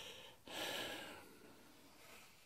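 A person's quiet breath, a soft whoosh about half a second in that fades away over the next second.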